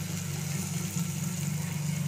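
Chopped onions sizzling in hot oil in a pot, over a steady low hum.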